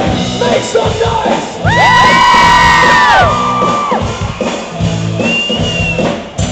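Live pop-rock band playing loud: drums, electric bass and guitar with a male lead vocal. Just under two seconds in, several fans close by scream together over the music for about a second and a half.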